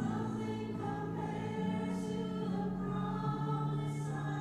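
Voices singing together in a slow worship song, holding long notes.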